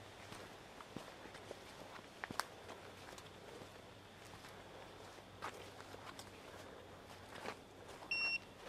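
Faint footsteps on a dirt forest trail, with a few sharper clicks, the loudest about two and a half seconds in.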